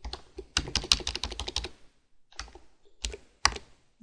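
Typing on a computer keyboard: a quick run of keystrokes for about two seconds, a short pause, then a few more keys.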